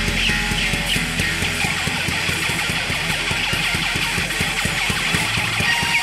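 Rock band demo recording: electric guitar over bass and drums, playing a fast, even rhythm.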